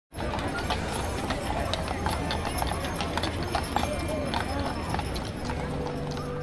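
Hooves of a pair of draft horses clip-clopping on a paved street as they pull a carriage, over crowd chatter. Music starts near the end.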